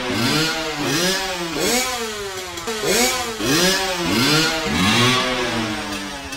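Revving dirt-bike noises over and over, each one rising and then falling in pitch, about three every two seconds.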